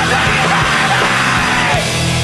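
Hardcore screamo punk song: a screamed vocal over distorted guitars, bass and drums, the vocal breaking off near the end and leaving the guitar chords ringing.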